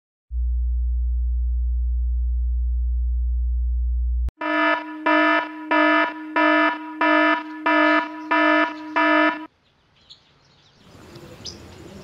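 A steady low electronic hum for about four seconds, ended by a sharp click, then about eight evenly spaced alarm-like electronic beeps, a little under two a second. Faint background noise rises near the end.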